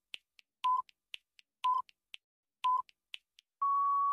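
Quiz countdown timer sound effect: a short electronic beep about once a second, with faint ticks between the beeps, ending in a longer, slightly higher tone near the end that signals time is up.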